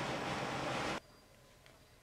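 Steady rushing noise from a room air conditioner that cuts off suddenly about a second in, leaving near silence.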